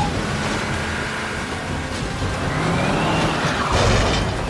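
Film sound mix of a tornado: loud, steady wind noise with a large vehicle's engine, and a tone rising in pitch about two-thirds of the way through. A louder burst of noise comes near the end.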